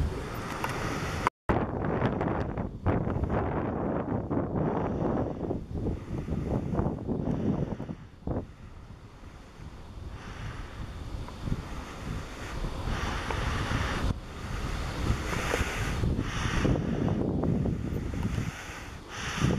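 Wind buffeting the camera microphone in uneven gusts, with a brief cut to silence about a second and a half in.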